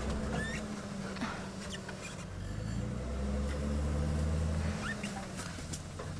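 Game-drive vehicle engine running at low speed while it is manoeuvred into a parking spot, its pitch shifting and its level rising in the middle before easing off. A few faint, brief high chirps sound over it.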